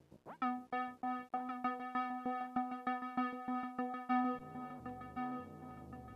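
DIY Arduino-controlled cassette tape synth playing a taped FM string note. The pitch sweeps up as the first note starts, then one held note repeats in quick stabs, about three or four a second. About four seconds in, the note gives way to a quieter, lower wash.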